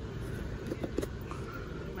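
Steady low rumble of a store's background noise, with a few faint knocks about a second in.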